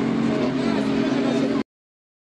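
Open-wheel dirt-track race car's engine running at a steady pitch, mixed with voices, until the sound cuts off suddenly about a second and a half in.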